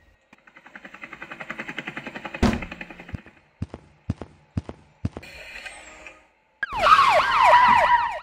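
A rapid whirring pulse builds for about three seconds and ends in a thud, followed by a few sharp clicks. Then police sirens wail loudly, starting near the end.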